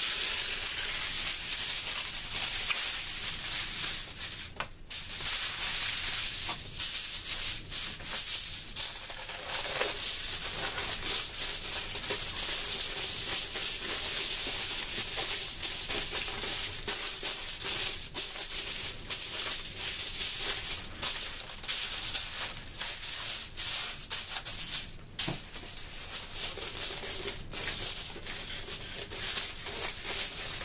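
Aluminum foil crinkling and crackling steadily as it is handled, smoothed and taped down over a cardboard shield.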